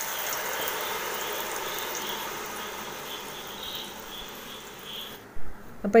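Jaggery syrup sizzling as it is poured into a hot brass pan: a steady hiss that slowly fades and cuts off sharply about five seconds in.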